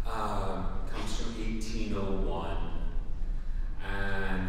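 A man talking to an audience through a handheld microphone, heard in a large hall.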